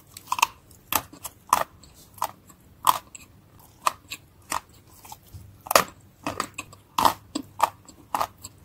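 Close-up mouth sounds of someone biting and chewing wet grey Turkestan clay paste: a run of short, sharp crunches about two a second, coming closer together in the second half.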